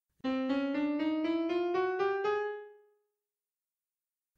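A piano-toned keyboard plays a quick run of about nine notes, about four a second, climbing step by step. The last note rings on and fades away.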